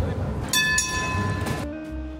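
Melbourne tram interior: a low running rumble, then a bright bell-like chime rings for about a second, starting suddenly about half a second in.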